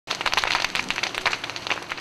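Dry grass and brush fire crackling: a dense run of sharp, irregular pops.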